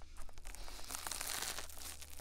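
Wet spoolie brush scrubbing inside the silicone ear of a 3Dio binaural microphone: a dense, close crackling scratch that thickens about half a second in.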